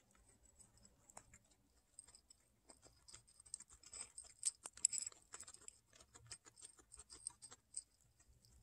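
Guinea pig eating dry food pellets and oats from a dish: quick, irregular crisp crunching clicks, busiest about four to five seconds in.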